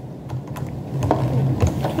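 Light, irregular clicks and taps of small plastic toy pieces being handled over a clear plastic tray, with a low steady hum underneath.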